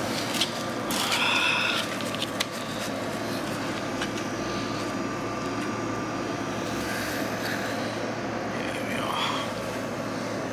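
Steady background rumble and hiss, with a few light knocks and rustles from a cardboard pizza box in the first couple of seconds as a slice is pulled out.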